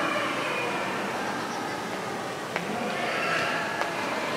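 Ambience of a large, echoing museum hall: a murmur of distant visitors' voices, with two short sharp clicks past the middle and near the end.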